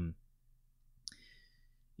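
The end of a spoken "um", then quiet room tone broken by one short, soft click about halfway through.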